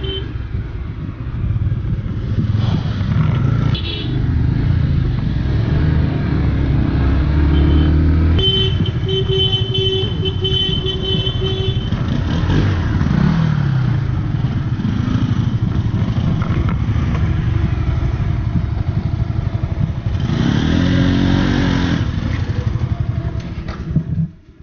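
Motorcycle engine running under way, its pitch rising and falling with the throttle. A steady high tone sounds for a few seconds about a third of the way in. The engine sound drops away at the very end as the bike stops.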